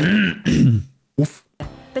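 A man's laughter dying away into a short, rough throat sound, followed by a brief silence with a single click. Background music and a narrator's voice come in near the end.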